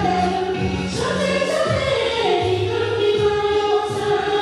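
Nyishi folk song sung in chorus by a group of voices, with long held notes that change pitch every second or so over a low steady tone.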